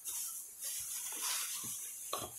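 Plastic shopping bag rustling and crinkling steadily as a hand digs through it for the next item.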